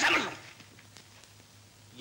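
A short, sharp yelp-like cry that falls in pitch, lasting about half a second at the very start, then quiet.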